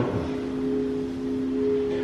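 A television drama's soundtrack between lines of dialogue: a steady low hum of a few held tones, coming from the TV.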